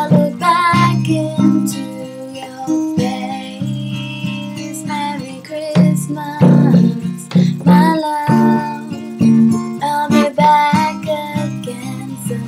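Acoustic guitar strummed in a slow accompaniment, a chord every second or so, with a woman's voice singing a melody over it in a few phrases.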